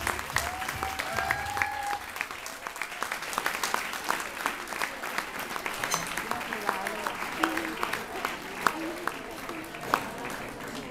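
Audience applauding, with the dance music fading out in the first two seconds and voices mixed in.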